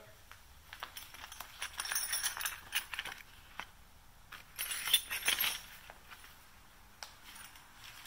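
Small steel open-end wrenches from a motorcycle's mini tool kit clinking and rattling against each other as they are handled in their vinyl pouch, with the pouch rustling. The clinks come in two bursts, about two seconds in and again about five seconds in.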